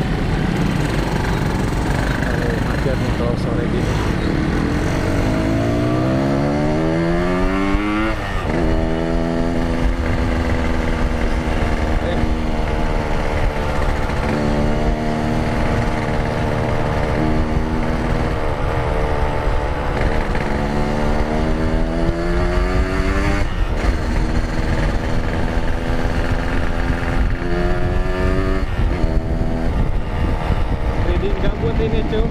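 Yamaha RX-King's two-stroke single-cylinder engine heard from the rider's seat, accelerating: its note climbs in pitch and drops at each of several gear changes, the first sharp drop about eight seconds in. A steady rush of wind and road noise runs underneath.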